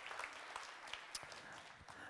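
Faint audience applause, a spatter of many hands clapping that dies away toward the end.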